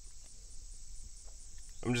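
Steady, high-pitched chorus of insects chirring, with no breaks; a man's voice starts just before the end.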